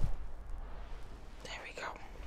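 Clothing and a dog's body rubbing against a clip-on microphone as a dog is held against the chest, with a low thump right at the start and a low rumble throughout. A short whisper about one and a half seconds in.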